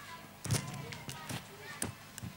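A few dull thuds, the loudest about half a second in, with faint voices in the background.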